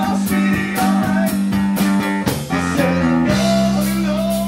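Live blues band playing, with electric guitar over drums. About three seconds in the drumming stops and the band holds a sustained note.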